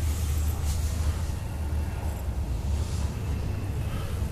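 A steady low rumble with faint scattered noise above it.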